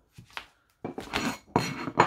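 Small ceramic paint palette handled on a wooden desk: a couple of light knocks, then about a second of clattering and scraping of the porcelain near the end.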